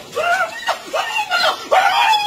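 High-pitched voices shouting a short call over and over, about twice a second, like a chant.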